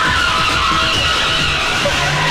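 Jeeps skidding on a concrete floor: a continuous, wavering tyre squeal over engine noise.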